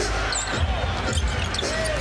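A basketball dribbled on a hardwood arena court, a run of low thuds over steady crowd noise.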